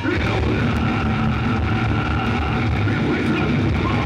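Heavy metal band playing live, loud and steady: a distorted guitar chord held and ringing out as a continuous drone, with no clear drum beat.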